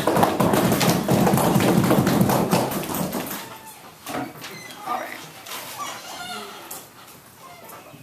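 Audience applauding, loud for about three seconds and then dying away, leaving faint voices and a few light taps.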